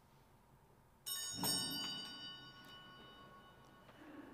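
A bright, many-toned bell struck several times in quick succession about a second in, its ringing fading over the following seconds: a sacristy bell signalling the start of Mass.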